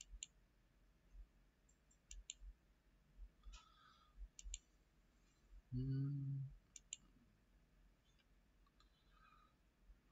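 Computer mouse clicking, several times and often in quick pairs, over quiet room tone. A short low hum, the loudest sound, comes a little past halfway.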